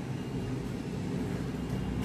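Steady low background hum of a room between spoken phrases, with no distinct events.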